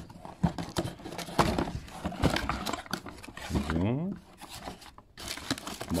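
Cardboard box and crumpled brown packing paper rustling and crinkling as a parcel is unpacked and the kit box inside is handled, with short sharp clicks and knocks. A single spoken word comes near four seconds.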